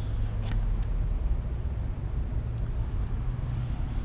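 Steady low rumble of an idling vehicle engine, with outdoor background noise.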